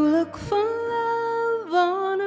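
A woman singing a slow worship song over instrumental backing: a short held note, a brief break, then a long held higher note that drops in pitch near the end.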